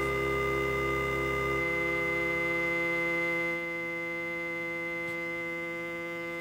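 Behringer Neutron synthesizer sounding a sustained, unchanging drone chord, its two oscillators, resonant filter and LFO all used as tone sources. Some of the lower notes drop away about a second and a half in, and more go about halfway through, leaving a thinner held chord.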